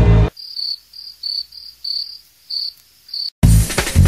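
A dance-music beat cuts off and leaves faint crickets chirping in short high pulses at one pitch, about three a second, until the music comes back in near the end.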